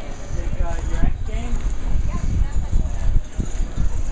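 Indistinct chatter of several people talking over one another, over a loud, uneven low rumble on the microphone.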